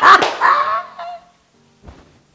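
A woman laughing loudly, the laugh dying away a little over a second in, followed by a short soft thump near the end.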